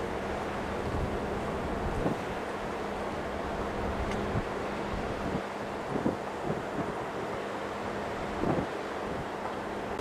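Wind blowing across the camcorder microphone, with gusty low rumble over a steady outdoor background noise.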